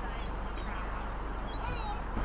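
Birds calling: short high whistled notes recurring about every second and a half, with lower squawky calls about half a second and a second and a half in, over a steady low hum.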